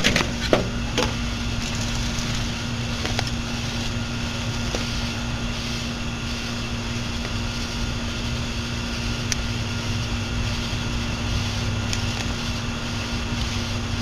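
Steady low electrical hum with a constant tone, and a few faint light clicks in the first few seconds.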